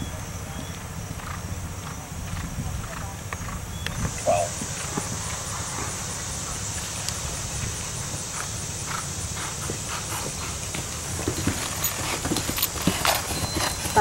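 Horse cantering over turf, its hoofbeats growing louder toward the end as it nears, over a steady high hiss that sets in about four seconds in.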